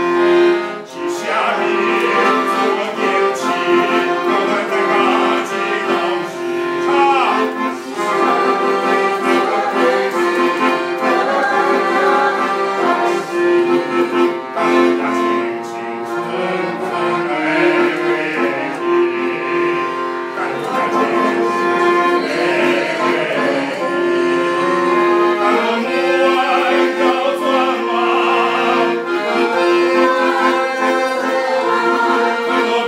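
Accordion playing a melody over sustained reedy chords, with a steady low note held under most of it.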